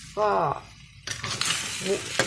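A metal spatula stirring snails and greens in a frying pan of sizzling curry; the sizzle and the stirring start abruptly about halfway through.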